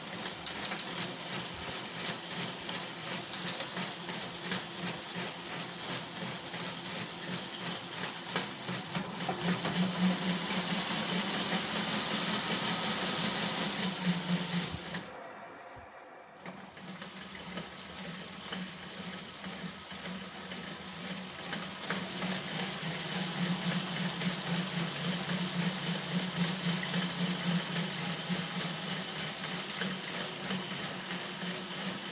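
A car alternator converted into a brushless motor running, spinning a bicycle's chain drive and rear wheel: a steady mechanical whirring hum. It grows louder for a few seconds, cuts out briefly about halfway through, then runs steadily again.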